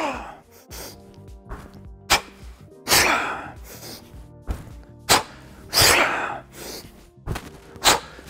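A man's sharp, breathy exhalations, about one every three seconds, in time with repeated one-arm kettlebell jerk lifts. A few short knocks fall between the breaths, over quiet background music.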